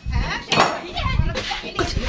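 A busy clatter of short knocks and clinks, the loudest about half a second in, with voices in the background.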